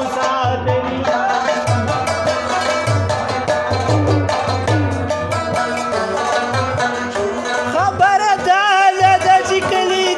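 Several Pashto rababs plucked together in an ensemble, over the steady beat of a mangay clay-pot drum. Near the end the melody rises and turns ornamented, with quick wavering notes.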